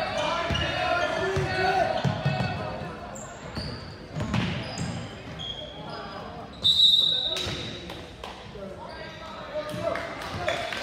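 A basketball being dribbled on a hardwood gym floor, with sneaker squeaks and voices echoing in the hall. About two-thirds of the way in, a loud high tone sounds for just over a second.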